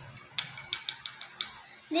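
Metal spoon clinking against the inside of a glass while stirring soil into water: about six light, quick clicks over a second.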